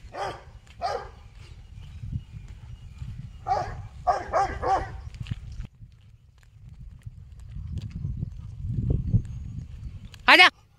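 A dog barking: two barks in the first second, then a quick run of about four barks starting about three and a half seconds in, over a steady low rumble; the barking stops about halfway through.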